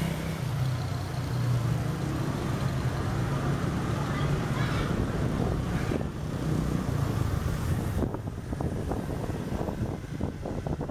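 Motorbike engines and street traffic close by, heard from a moving bicycle, with a steady low engine hum. In the last couple of seconds wind buffets the microphone.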